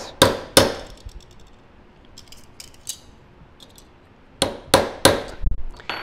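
Hammer striking a steel center punch with a wide, nearly flat point to flare the end of a tubing rivet through stacked sheet metal. Two sharp metallic blows come just after the start, then light clicks, then three more quick blows and a dull thump near the end.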